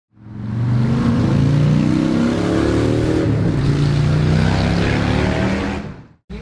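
Harley-Davidson FXDR's Milwaukee-Eight 114 V-twin engine accelerating, its pitch climbing over the first three seconds and then holding steadier. The sound fades in just after the start and fades out near the end.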